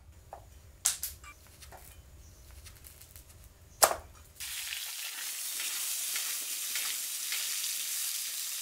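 A cleaver chopping through a green-skinned squash on a cutting board: a few sharp knocks, the loudest just before halfway. Then, from about halfway, a steady sizzle of food frying in hot oil.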